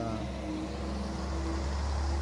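Low engine rumble of a motor vehicle in street traffic, with a faint steady hum above it, growing a little louder near the end.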